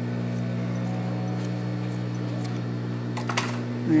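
Steady low hum of an industrial overlock (serger) machine's motor running while it is not stitching, with a short burst of clicks a little over three seconds in as fabric is handled at the machine.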